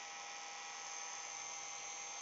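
Electric heat gun running, a low steady hum from its motor and fan as it blows hot air into a plastic bag.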